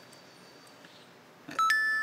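Smartphone message alert: a two-note electronic chime, a short lower note then a higher one that is held, coming about a second and a half in after near quiet.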